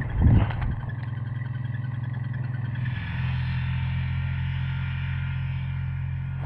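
A low, steady engine drone, stepping slightly up in pitch about three seconds in, with a loud thump just at the start.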